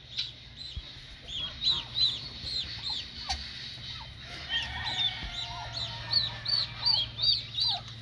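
Newly hatched chicks peeping in the nest under a broody hen turkey: a string of short, high peeps, several a second.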